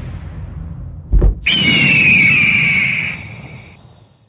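Intro sound effects: a low rumble with a deep whoosh about a second in, then a long high screech, a stock eagle-cry sound effect, falling slightly in pitch and fading away near the end.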